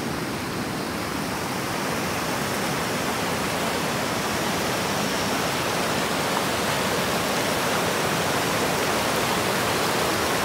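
Shallow rocky river rushing over stones: a steady wash of water, slightly louder after the first couple of seconds.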